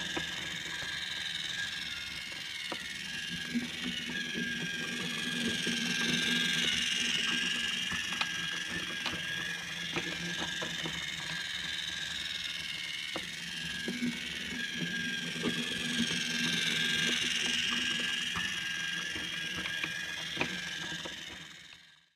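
A steady mechanical whirr that swells and fades twice, about eleven seconds apart, with scattered light clicks and taps.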